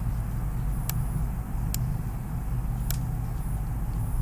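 A computer mouse clicking: three or four short, sharp clicks about a second apart, over a steady low hum.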